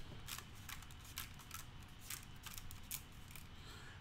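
Faint, scattered clicks and light plastic rattling of Lego plates and pieces being handled.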